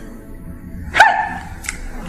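A dog barks once, sharp and loud, about a second in.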